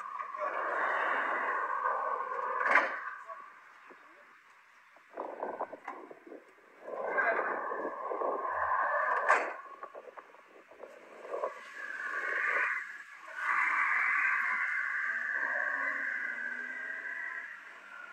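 Indistinct voices, thin and muffled, coming and going in stretches with short lulls between them.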